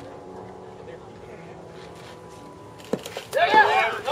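A baseball bat striking a pitched ball about three seconds in, one sharp crack, followed immediately by loud shouting and cheering from spectators.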